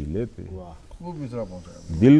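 Only speech: a man reciting Urdu poetry in a drawn-out, half-sung voice, loud at first and quieter through the middle.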